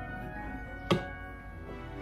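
Background music, with one sharp clink a little under a second in: a spoon knocking against the glass mixing bowl while pretzels are stirred in melted chocolate.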